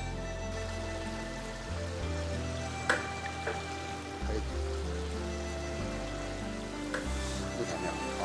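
Background music of sustained, held notes over a slowly changing bass line, with a sharp click about three seconds in.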